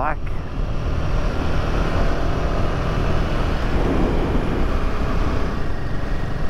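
Motorcycle on the move: the Royal Enfield Himalayan 450's single-cylinder engine running under steady wind rush on the bike-mounted microphone, a continuous low rumble.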